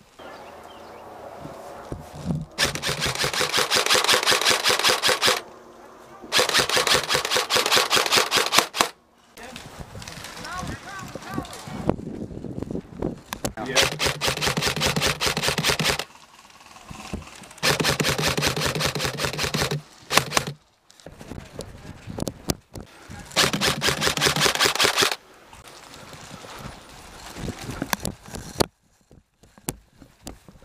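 Airsoft electric rifle firing five long full-auto bursts, each two to three seconds of rapid, evenly spaced shots.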